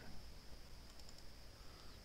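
A few faint computer mouse clicks over quiet room noise with a low hum.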